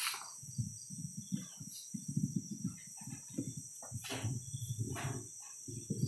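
Crickets chirping steadily at night, with faint low knocks and rustles underneath.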